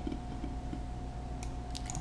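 Steady low hum with a faint thin whine in the background, then a few quick computer-keyboard clicks near the end as a number is typed in.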